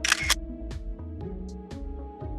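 Background music with steady held notes, opened by a short, sharp, hissing sound effect in the first moment.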